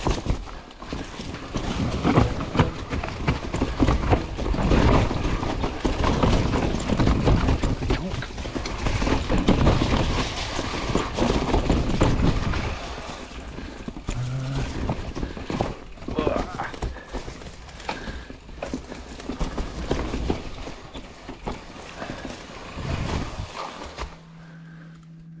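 Mountain bike rattling and clattering down a rocky trail, its tyres rolling through a thick layer of dry fallen leaves, with a rapid run of sharp knocks as it hits rocks. It is loud and busy for the first half, then quieter about halfway through, with scattered knocks.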